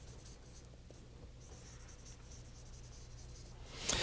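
Faint scratching and light ticking of writing during a pause in a lecture, over a steady low room hum.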